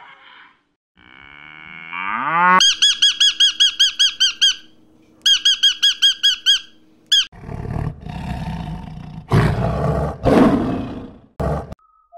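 A montage of animal calls. A calf moos about a second in. Then a rainbow lorikeet gives two bouts of rapid, high squawks at about seven a second. In the last few seconds come several loud, rough, noisy calls from an animal that is not shown.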